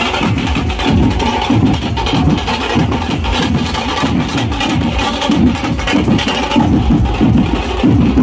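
Loud procession band music driven by large barrel drums beaten in a fast, steady rhythm.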